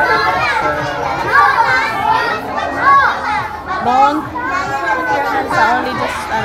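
A group of young children chattering and calling out all at once, many high voices overlapping.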